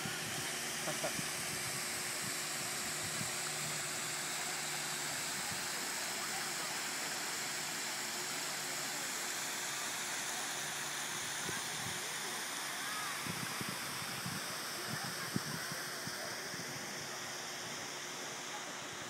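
Waterfall in the Getty Center's Central Garden, water pouring steadily into the pool around the hedge maze: a constant, even rushing hiss.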